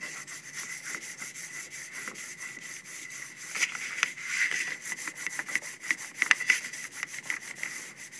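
Plastic hand burnisher rubbed rapidly back and forth over paper laid on an inked printing block, pressing the ink onto the paper. It makes a continuous run of short scratchy rubbing strokes that get louder about halfway through.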